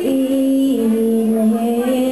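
Children's choir singing slow, long held notes, the pitch stepping from note to note.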